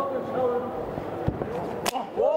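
A bare-shin middle kick landing on the opponent's body: one sharp impact near the end, over the murmur and shouts of the arena crowd.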